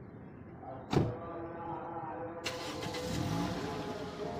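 A Toyota Corolla Altis's door shuts with a single thud about a second in. About a second and a half later the engine starts and keeps running.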